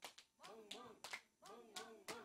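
Faint hand claps in a quick run, several a second, from two people playing a hand-clapping rhythm game, with faint voices chanting along between the claps.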